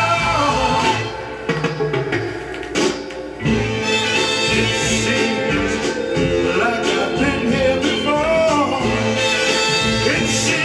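A soul song playing from a 45 rpm vinyl single: singing over a band. The music drops quieter about a second in, then comes back fuller at about three and a half seconds.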